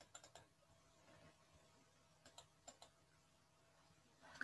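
Faint clicking at a computer: a few quick clicks right at the start and another few a little past two seconds in, with near silence between.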